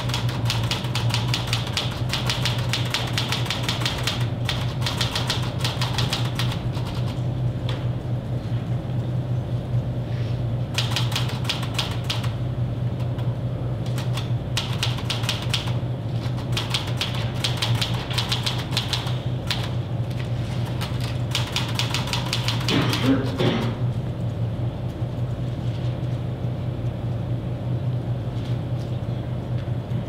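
Rapid typing on a keyboard, in several fast runs of key clicks broken by short pauses. A steady low hum runs underneath.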